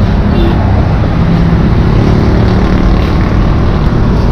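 Steady road traffic noise, the low, even sound of vehicle engines running close by.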